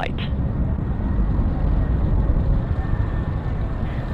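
Steady low rumble of an Atlas V rocket climbing under power, heard from far away, with a faint steady high tone above it.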